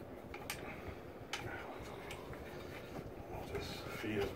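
Faint handling of a plastic electrical box and Romex cable as the cable is fed into the box, with a few light clicks of plastic.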